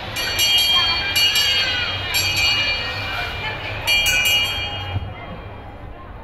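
Electronic train-whistle sound from a children's mall ride train, sounded four times in short steady high-pitched blasts of about a second each, over the chatter of a crowd.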